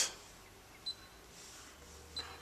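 A single short, high-pitched beep from a Newall DP1200 digital readout's keypad as a button is pressed, about a second in, over faint room tone.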